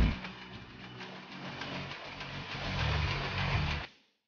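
Textile machinery running: a steady low mechanical hum with noise above it, growing somewhat louder in the second half and cutting off suddenly just before the end.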